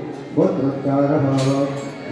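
A man chanting Sanskrit mantras in a sustained, even-pitched recitation, resuming after a short pause about half a second in.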